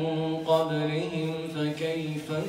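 A man's voice reciting the Qur'an in a melodic chanting style, holding one long note that wavers slightly.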